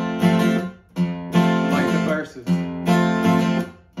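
Acoustic guitar strumming chords in a rhythmic pattern, the chords ringing in groups broken by short dips about a second in and again near two and a half seconds. A single spoken word comes in about two seconds in.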